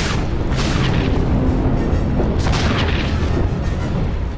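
Sound-effect explosions hitting a warship's hull in a space battle: several heavy booms over a continuous deep rumble, with music underneath.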